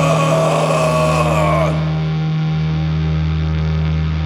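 Heavy, distorted crust punk music: a wavering high note over a held low guitar chord. About two seconds in, the bright top of the sound drops out, leaving the distorted guitar droning on a sustained low note.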